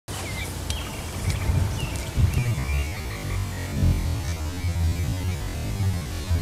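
Birds chirping in short rising and falling calls several times over a steady low rumble.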